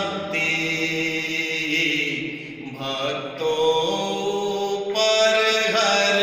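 A Hindu devotional hymn sung in a slow chanting style, with long held notes and gliding pitch, and a short break between phrases about two and a half seconds in.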